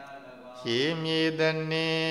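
Buddhist monk chanting: after a short pause, one long syllable held on a steady pitch from about half a second in.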